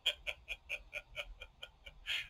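Fast, faint ticking, a steady run of small clicks about seven a second.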